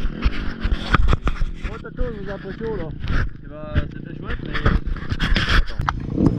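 Indistinct voices talking, with several sharp knocks and scraping about a second in as the action camera is handled, over low rumbling wind noise on the microphone.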